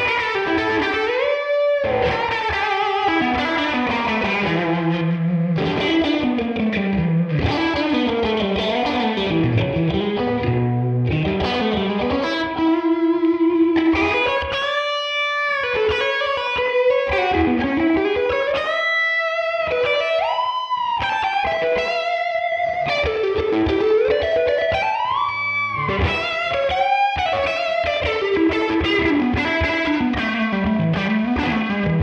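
Electric guitar solo on a Fender Stratocaster through a Tone King Imperial MKII tweed amp plugin, its volume control dimed for a pushed, gritty overdriven lead tone. Single-note blues lines full of string bends and vibrato.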